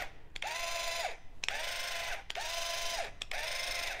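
Classic-style linear actuator with metal spur gears run in three or four short bursts of under a second each, its motor whine rising as it starts and dropping as it stops, over a buzzing gear noise. It is quite noisy: the metal spur gears smack each other as they mesh.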